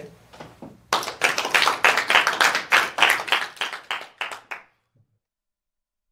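Audience applauding, starting about a second in and lasting about four seconds, then cut off abruptly.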